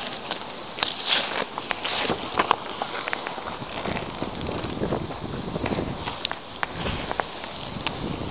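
Glossy magazine pages being handled and turned: paper rustling with many small crackles and clicks.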